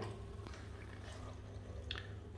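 Circulation pump on an underfloor-heating manifold running with a faint steady low hum and faint sounds of water in the pipes, working normally again after being freed and restarted from a long idle spell.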